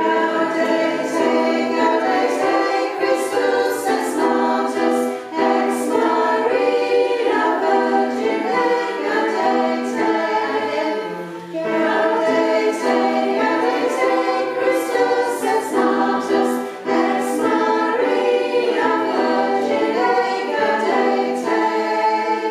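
Mixed-voice amateur choir singing in parts, in phrases with short breaks about every five to six seconds.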